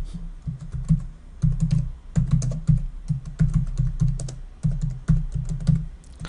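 Typing on a computer keyboard: quick runs of key clicks, each stroke with a dull thump, broken by short pauses.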